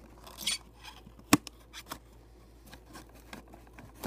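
Cardboard box and plastic packaging being handled: a short rustle about half a second in, then one sharp click and a few smaller clicks and taps.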